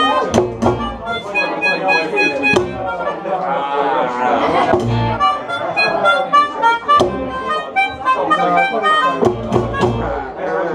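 Small acoustic band playing a Latin groove: a melodica carries the lead over acoustic guitar, violin and upright double bass. A wavering, trilled run of the lead comes about four seconds in.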